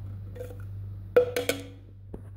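Kitchen crockery and utensils knocking together: a light tap, then about a second in two sharp knocks in quick succession, each with a short ring, over a steady low hum.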